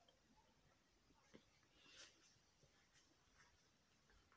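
Near silence, with faint scratching of a line being marked on fabric along a ruler: one brief scratch stroke about two seconds in and a few light taps.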